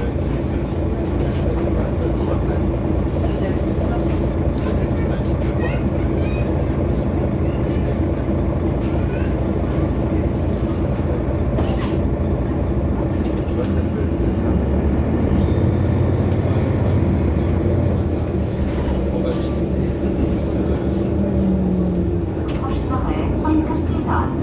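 Mercedes-Benz Citaro facelift city bus running, its engine giving a steady low drone that grows louder for a few seconds past the middle.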